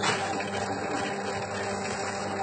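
Electric dough mixer running steadily, its motor humming evenly as the hook kneads the dough in the bowl.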